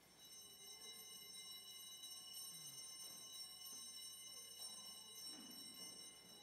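Altar bells rung at the consecration, marking the elevation of the host: a faint, steady, high ringing of several bell tones that stops near the end.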